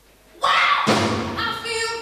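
A live band with a female singer starting a soul song: a sudden loud start about half a second in, with drum hits and the singer's voice over the band.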